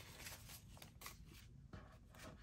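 Faint rustling and soft ticks of paper banknotes being handled and counted, close to near silence.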